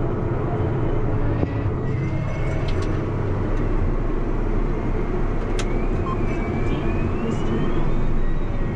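John Deere 8360R diesel tractor running steadily at road speed while towing a folded anhydrous applicator bar, with a couple of sharp clicks. A faint high whine rises near the end.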